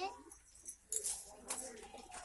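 Small plastic counting blocks clicking as they are moved about on a slate, with a child's soft voice under them.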